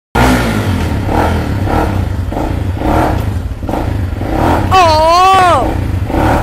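Supermoto motorcycle engine running with a steady low rumble. A person's voice comes in with a wavering pitch near the end.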